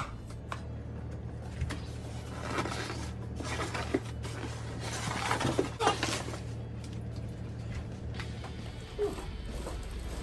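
Plastic wrapping crinkling and cardboard scraping as a heavy plastic-wrapped treadmill is pulled out of its shipping box, with a few knocks along the way.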